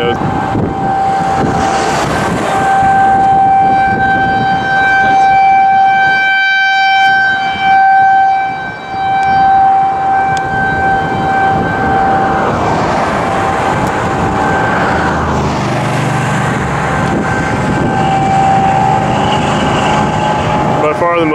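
Outdoor civil defense tornado siren sounding one long steady tone that swells and fades in loudness, sounding the tornado warning for the storm. The tone weakens after about twelve seconds, leaving the noise of wind and passing traffic.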